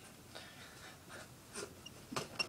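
Quiet room with a few faint, short, soft sounds: breaths and clothing rustling from a person moving their arms about.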